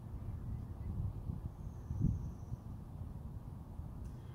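Low, steady outdoor rumble with no speech, broken by one brief louder bump about two seconds in and a faint high thin tone in the middle.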